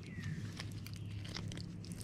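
Faint small clicks and rustles of fishing line and a soft-plastic lizard bait being handled close to the microphone, over a steady low hum.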